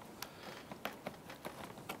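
A few faint, light clicks of a metal trim tool's hooked tip working under the center pin of a plastic push-pin clip in a car's bumper cover.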